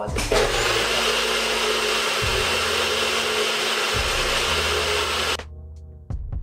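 Electric blender running at full speed while blending a smoothie: a loud, steady whirr that starts abruptly and cuts off suddenly about five seconds in.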